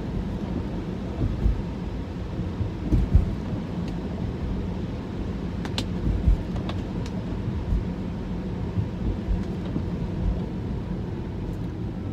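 Road noise inside an electric Tesla's cabin: a steady hiss of tyres on wet pavement under a low rumble, with a few brief low thumps.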